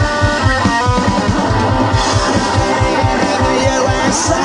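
Punk rock band playing live: distorted electric guitar, bass and drums over a steady fast beat, with held guitar notes in the first second.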